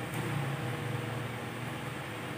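Steady low hum with an even hiss of background room noise.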